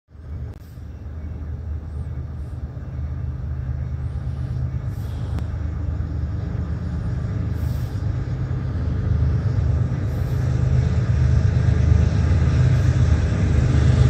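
Diesel locomotives of an approaching CSX freight train, a low steady engine rumble that grows gradually louder as the train nears.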